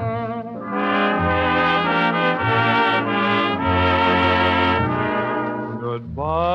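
Big band dance orchestra on a 1940 78 rpm shellac record playing an instrumental passage of a slow fox trot: brass sustains chords that change about every second over a moving bass line.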